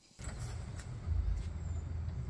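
Low, steady outdoor rumble picked up by a handheld phone microphone, with a few faint clicks. It cuts in abruptly just after the start and grows a little stronger about a second in.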